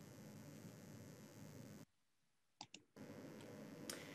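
Near silence: faint room hiss that drops out to dead silence for about a second midway, broken by two quick clicks close together, a computer mouse being clicked.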